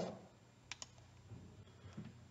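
Near-quiet room tone with two faint, short clicks in quick succession a little before a second in.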